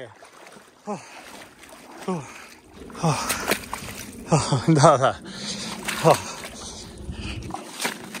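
A man gasping and grunting from the cold shock as he climbs out of an icy river, in short breathy bursts, with water sloshing and splashing around him.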